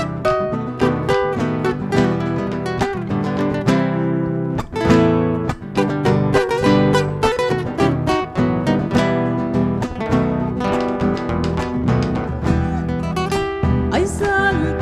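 Instrumental passage of Argentine folk music: acoustic guitars strummed in a steady rhythm with a picked guitar melody over them, and a bombo legüero drum beneath.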